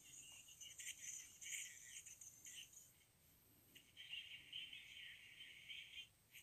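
Faint, tinny AM radio broadcast from a Motoradio Motoman pocket radio, heard only through its earphone held up to the microphone, coming and going in short irregular patches.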